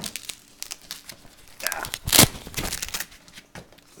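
Rustling and handling of a fabric light bag as an LED light bar is taken out of it, with one loud, short rasping noise about two seconds in.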